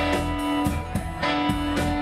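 Live blues band playing: an electric guitar holds two long notes, one fading just before a second in and the next struck soon after, over drum hits and bass.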